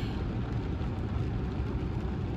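Rain falling steadily on a car's roof and windscreen, heard from inside the cabin, over a low steady rumble.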